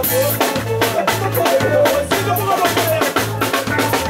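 Live band music with a drum kit and a bass line pulsing about twice a second under a wavering melody.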